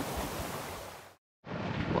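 Small surf washing onto a sandy beach, with wind, fading out over about a second; then a moment of dead silence before wind noise on the microphone comes back in.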